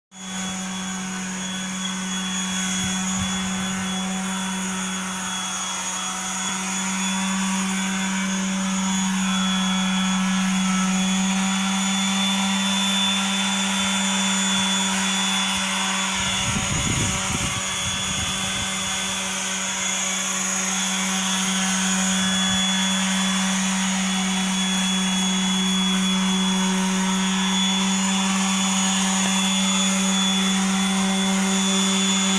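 Hand-held electric power sander with a round sanding disc running at a steady speed against the go-kart's metal frame tubing, a constant motor whine, with some rougher scraping and handling noise around the middle.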